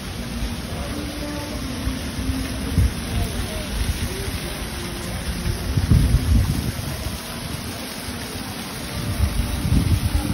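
Wind buffeting a phone's microphone: a low, uneven rumble over a steady rushing noise, swelling in gusts about three seconds in, around six seconds in and near the end.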